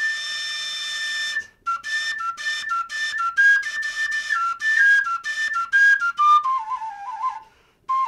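Instrumental outro music: a high, flute-like wind melody with one long held note, then a run of short notes that step down in pitch near the end.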